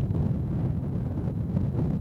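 Wind buffeting the camera microphone: a steady, gusting low rumble.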